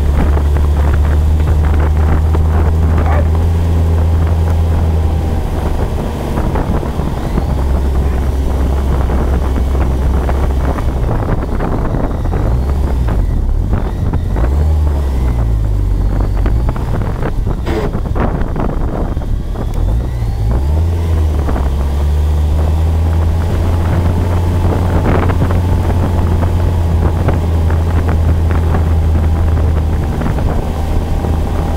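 Humber Pig armoured truck's Rolls-Royce B60 straight-six petrol engine running as the vehicle drives, heard from the cab. The engine note is steady, wavers and shifts up and down through the middle, then settles steady again, with some wind on the microphone.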